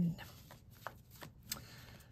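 Tarot cards being handled, with a few soft clicks and rustles of the cards.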